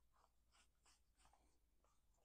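Faint, soft swishes of bare hands brushing and patting over shirt fabric, a handful of short strokes.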